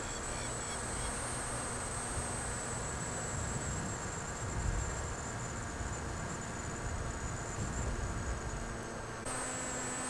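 A small electric flying wing's motor and propeller in flight, making a thin steady high whine that wavers slightly in pitch. Wind rumbles on the microphone underneath.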